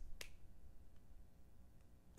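A single finger snap about a fifth of a second in, then faint room tone.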